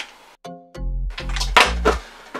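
Background music with a steady bass line. It nearly drops out at the start, then comes back in with a short held note.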